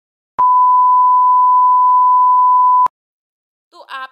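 A loud, steady electronic beep on a single high pitch, lasting about two and a half seconds and cutting in and out abruptly.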